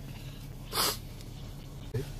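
A person sneezes once: a single short, breathy burst about three-quarters of a second in, over a steady low background hum.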